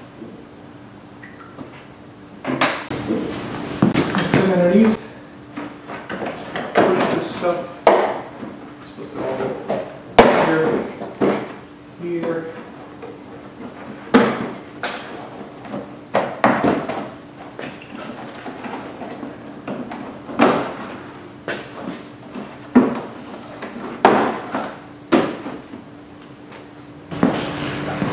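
Plastic trim clips and the bumper cover being pushed and snapped into place on a Honda Civic: a long run of irregular sharp clicks, knocks and rattles of hard plastic, with a few short squeaks.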